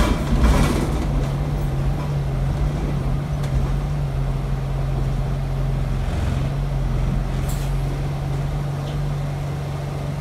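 Bus engine heard from inside the saloon as a steady low hum, opened by a short hiss of air at the very start and dotted with a few faint clicks and rattles.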